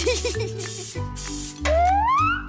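Insect-repellent aerosol spray can hissing briefly at the start, over background music with a steady bass line. Near the end a sound rises steadily in pitch.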